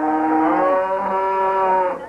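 A cow mooing: one long, loud moo of about two seconds that stops abruptly just before the end.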